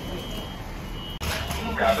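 A high-pitched electronic alarm beeping, a single tone repeating about every second, that cuts off suddenly a little past a second in; a voice on fire radio follows.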